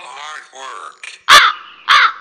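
A man's wordless vocal sounds, wavering in pitch, then two short, loud cries, one about a second and a quarter in and one at the very end.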